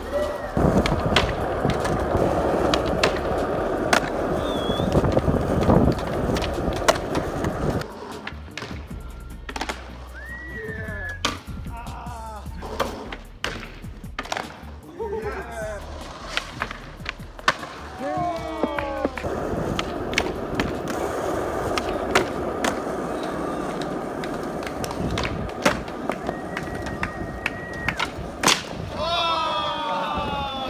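Skateboard wheels rolling over asphalt, with repeated sharp clacks of the board popping, landing and striking a ledge. The rolling is loudest for the first several seconds and again in the last third, quieter in between.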